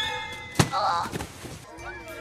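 A single sharp thunk about half a second in, as held music notes fade out, followed by a brief high voice-like sound.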